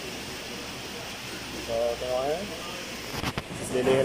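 A man's voice speaking briefly twice over a steady background hiss, with a few quick clicks near the end as the burger's foam takeaway box and plastic bag are handled while the top bun is lifted off.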